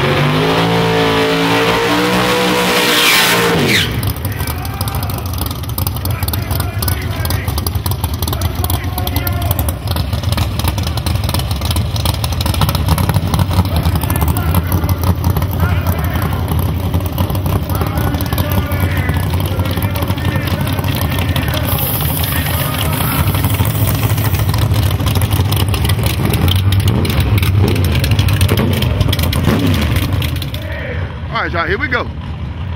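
A drag racing car's engine at full throttle, one steady high-revving note for the first few seconds, cutting off suddenly about four seconds in. After that, a steady low engine rumble with crowd chatter underneath.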